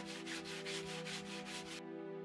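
Hand sanding a wooden plank: quick back-and-forth scratchy strokes, about five a second, that stop abruptly near the end, over soft sustained background music.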